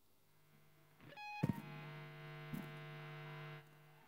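Faint, steady electrical hum from a stage sound system. About a second in comes a short rising run of tones and a sharp click, then a held note from an amplified instrument that cuts off suddenly near the end.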